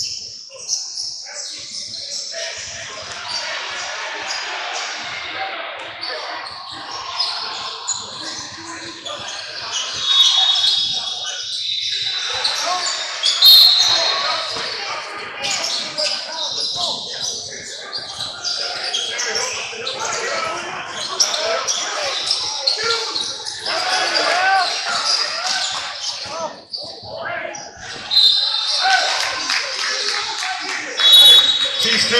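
A basketball bouncing on a hardwood gym floor, with chattering voices echoing in a large hall and a few brief high squeaks.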